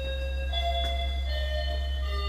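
Electronic doorbell chime playing a slow melody of sustained notes, a new note starting about every second, over a steady low hum.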